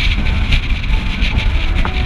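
Car driving along a road, a steady low rumble of engine and tyres with wind buffeting the externally mounted microphone.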